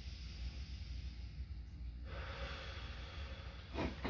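A faint deep breath, a soft airy hiss that rises about halfway through and lasts nearly two seconds, as the patient breathes deeply for a stethoscope lung exam.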